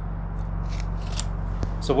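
A steel tape measure being retracted after a measurement: a light rustling slide that ends in a click about one and a half seconds in. A steady low hum runs underneath.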